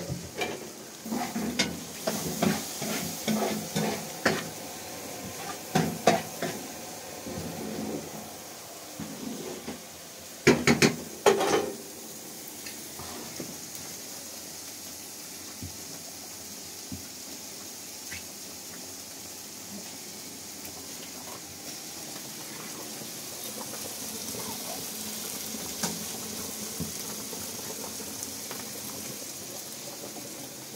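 Pots and kitchen utensils knocking and clattering irregularly, with a few louder knocks about eleven seconds in; then a steady hiss of frying in a pan on a gas hob.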